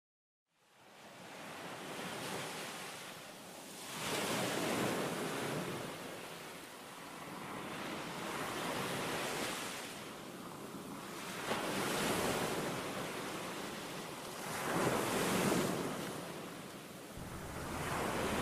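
A rushing noise fades in about a second in, then swells and falls in slow waves every three to four seconds.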